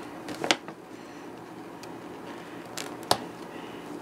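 Duct tape being peeled off a cardboard box, with two short sharp rips, one about half a second in and one about three seconds in, and quiet handling in between.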